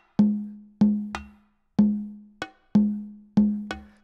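Sampled bongos from GarageBand's Studio Percussion drum kit, tapped out on the iPad's touch pads: about eight hits in a loose rhythm, the main strokes with a short ringing low note.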